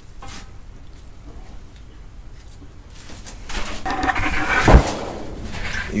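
Rustling and knocking from wheels being handled, with one sharp, loud knock a little before the end.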